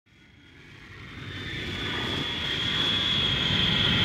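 Jet airliner flying in, its engine whine and rumble swelling steadily from faint to loud as it approaches.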